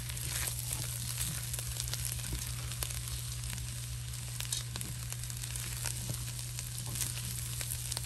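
Raw rice, smoked sausage and chopped vegetables sizzling in a stainless steel pot while a wooden spoon stirs them, with frequent scrapes and ticks against the pot. The rice is being toasted in the fat before the broth goes in. A steady low hum runs underneath.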